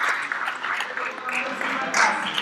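A group of people clapping in applause, with a few voices mixed in.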